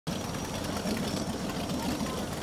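Motorboat engine running steadily with a low hum.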